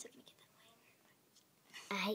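Faint whispering, with a small click at the start and a few quiet handling sounds.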